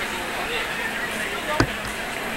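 A crowd talking, with one sharp knock about three-quarters of the way through that stands out as the loudest sound.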